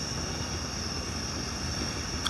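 Steady low rushing rumble of a gas fire table's flame, under a constant high trill of crickets.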